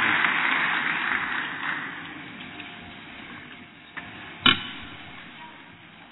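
Crowd noise in a large assembly chamber dies away over the first two seconds, leaving low room tone. A single sharp thump about four and a half seconds in is the loudest moment, with a fainter click just before it.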